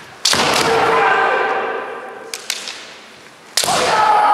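Bamboo shinai strikes in a kendo bout: a sharp crack about a quarter second in and another just before the end, each followed by a long, held kiai shout. Two lighter shinai clacks fall in between.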